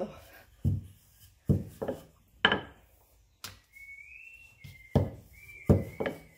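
Wooden rolling pin working flour-tortilla dough on a granite countertop: about six dull thumps and knocks, unevenly spaced, as the pin is pressed and rolled over the dough. A faint high whistling tone comes in during the second half.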